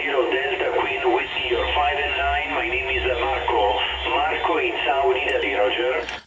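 A distant amateur station's voice received on single sideband through the President Washington 10-metre transceiver's speaker: thin, cut off above the voice range and hard to make out, with a low rumble under it in the middle of the stretch.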